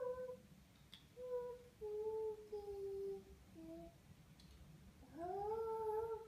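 A toddler singing a tune without clear words: a few long held notes, some sliding up into the note, in short phrases with pauses between, the last phrase swooping up near the end.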